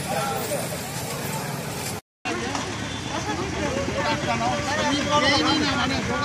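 Chatter of a crowd of shoppers in a busy street market, several voices overlapping, over steady road traffic. The sound drops out completely for a moment about two seconds in.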